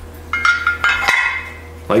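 Steel ROPS grab handle, cut from 1/8-inch plate, clinking against a short section of tractor ROPS tube as it is fitted on. Several light metal knocks with a brief ringing tone come over about a second, starting a moment in.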